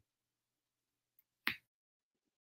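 Near silence broken by a single short, sharp click about one and a half seconds in.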